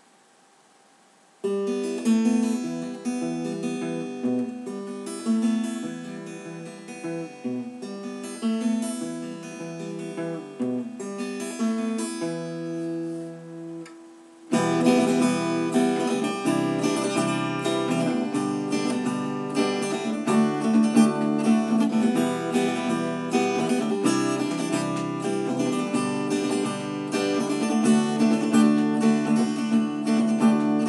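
Acoustic guitar playing an instrumental intro: it starts about a second and a half in with separate picked notes, eases off, then about halfway through turns fuller and louder, likely strummed chords.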